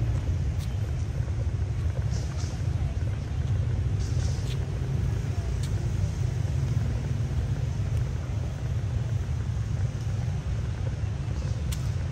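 Steady low outdoor rumble with a few faint clicks.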